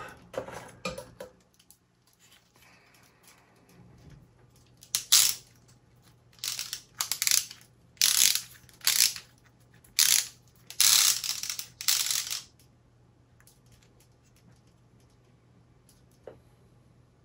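Wooden parts of a plywood mechanical dragon model kit rasping and clicking against each other as the model is handled and its wing mechanism worked, in a run of about ten short bursts starting about five seconds in and stopping about twelve seconds in.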